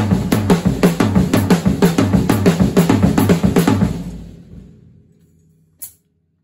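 Drum kit played in a fast, even groove on snare and bass drum, several strokes a second. The playing stops about four seconds in and the drums ring out, with one last single hit just before the end.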